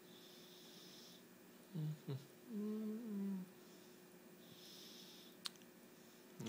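A man's brief wordless vocal sound, then a short hummed 'hmm' a second long, over faint room tone. A faint high whine comes and goes twice, and a single sharp click comes near the end.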